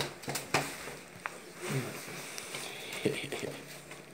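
A few quick taps and knocks in the first half-second, then two brief vocal sounds from a child, one about two seconds in and one about three seconds in.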